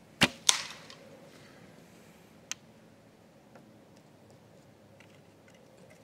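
A Centaur Triple Carbon Elite longbow shot: a sharp snap of the string on release, then a fraction of a second later a louder crack with a short rattling tail as the arrow strikes the ground among the logs, a missed shot. A smaller single click follows about two and a half seconds in.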